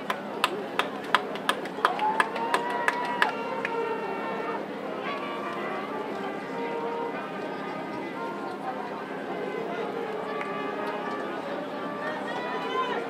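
Crowd chatter with voices in a stadium. In the first three seconds, a steady run of about eleven sharp clicks, roughly three a second, cuts through it.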